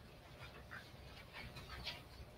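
Faint room tone with a low hum and a few soft, short noises scattered through it.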